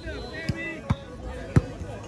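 Volleyball struck three times in a rally, sharp slaps of hands and arms on the ball, the second coming under half a second after the first and the third, loudest, about two-thirds of a second later. Players' voices call out around the hits.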